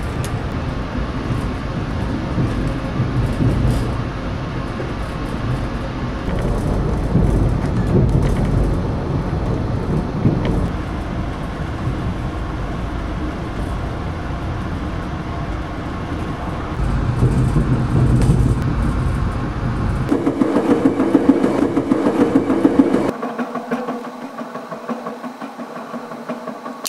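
Interior rumble of a passenger rail car running along the track, steady with slow swells. About twenty seconds in it changes abruptly to a thinner, pulsing sound, and the deep rumble drops out a few seconds later.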